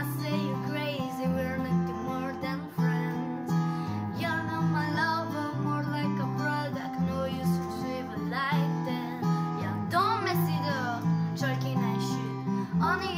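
Acoustic guitar playing a chord accompaniment, with a voice singing a melody over it.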